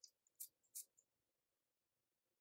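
Faint perfume-atomizer sprays: two short hissing puffs in the first second, with smaller ticks just before and after them.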